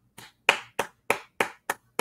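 One person clapping his hands at an even pace, about six claps at roughly three a second.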